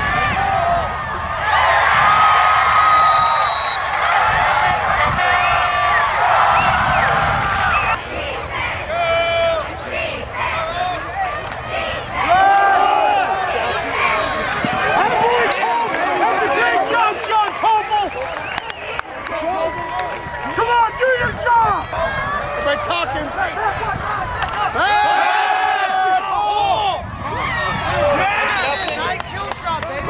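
Football crowd and sideline voices, many people shouting and talking over one another at once.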